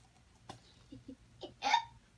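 A toddler gulping from a paper cup with soft swallowing and mouth sounds, then a short, loud breathy gasp near the end as he takes the cup from his mouth.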